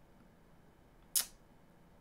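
Quiet room tone broken by a single short, sharp click a little over a second in.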